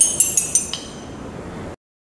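A glass rod tapping a row of glass test tubes in quick succession, each strike giving a short high ring. The tubes hold more water in turn, so each tone sounds lower in pitch than the one before. The ringing cuts off abruptly near the end.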